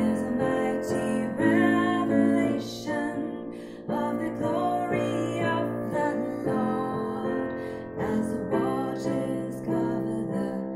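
A woman singing a slow hymn, accompanying herself on piano.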